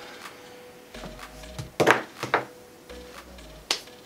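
Faint background music, with a few sharp hand claps, the loudest pair about two seconds in and another near the end.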